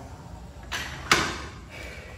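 Two sharp knocks about half a second apart, the second much louder with a short ring-out.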